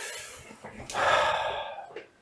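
A man breathing out heavily through his nose, with a fading breath at the start and a stronger, louder exhale about a second in.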